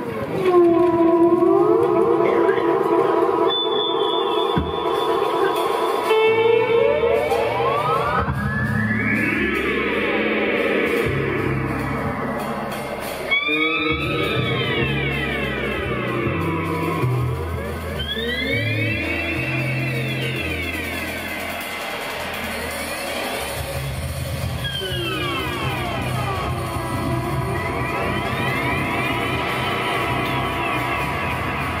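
Live instrumental band: an electric guitar played through effects, its notes sweeping up and down in pitch in slow arches every few seconds. A bass guitar comes in underneath about six seconds in.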